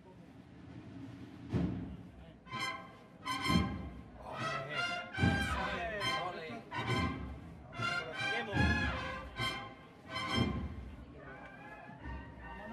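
Procession band music: loud brass chords, each struck together with a heavy bass drum beat, repeating about every second and a half to two seconds and starting about a second and a half in.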